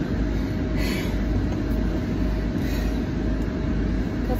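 Steady road and engine rumble heard inside the cabin of a car driving at speed.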